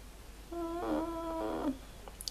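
A woman humming one held "mmm" note for about a second, starting about half a second in, with little change in pitch.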